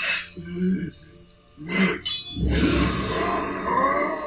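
Animated-film soundtrack: short straining grunts, then a loud, low, rumbling surge of a magical power sound effect that builds through the second half, with a rising tone near the end, as the Toa join their powers to heal.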